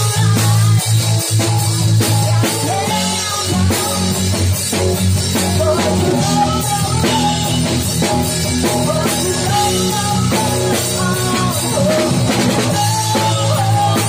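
Drum kit played live, cymbals and drums, along with a loud backing track of rock-style music with a melody line.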